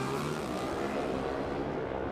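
Two Pro Stock drag-racing motorcycles at full throttle down the quarter mile, a steady engine note of several tones whose high end fades as they pull away.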